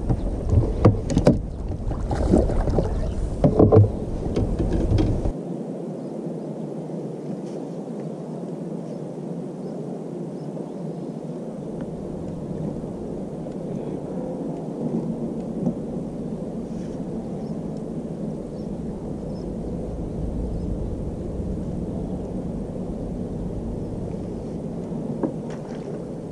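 Irregular knocks and splashing at the side of a boat while a hooked bass is brought to the landing net, lasting about five seconds. Then comes a steady low rumble of the boat's surroundings.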